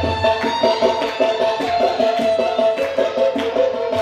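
Live Carnatic-style devotional music: a tabla keeps a brisk rhythm under a melodic line of quick notes, with the tabla's deep bass strokes thinning out partway through.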